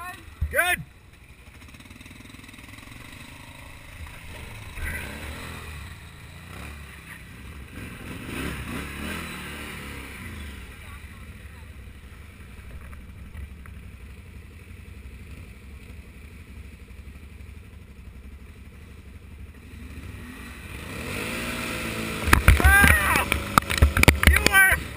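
Can-Am Outlander XMR 1000R's V-twin ATV engine running at low speed on a muddy trail, its note rising and falling with the throttle. It gets much louder with revs about two seconds before the end.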